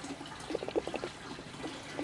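Water running and trickling in an aquaponics gravel grow bed, a steady watery hiss with faint irregular gurgles.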